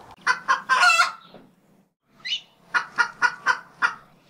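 Fowl clucking: short clucks, a few near the start and then a quick run of about five a second, with one higher rising squawk about two seconds in.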